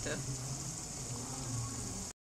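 Keema cooking in oil and yogurt in a kadhai, bubbling and sizzling steadily as it is fried down.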